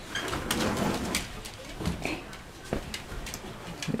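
Soft handling noise with a few light, separate knocks as fabric is pushed into the drum of a front-loading washing machine.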